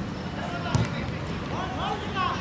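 A single sharp thump of a football being struck, about a second in, over steady outdoor background noise, followed near the end by players' shouts.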